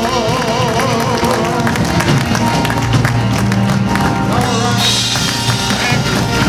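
Live gospel music from a church band with drums, with a held, wavering note in the first second and hand clapping from the men's chorus. The music continues without a break.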